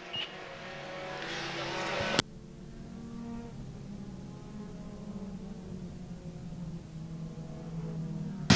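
Pure stock race cars' engines running at speed around the oval. The sound grows louder over the first two seconds, then drops off suddenly and settles into a quieter, steady drone.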